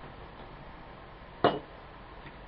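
A single short, sharp knock about one and a half seconds in, from small plastic fluorescent-lamp fittings being handled and set down on a wooden tabletop; otherwise only faint room noise.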